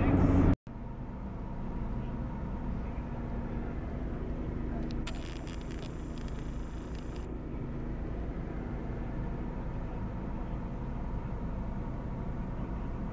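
Steady road and engine rumble heard from inside a moving car's cabin, with a hiss that comes in about five seconds in and cuts off suddenly about two seconds later.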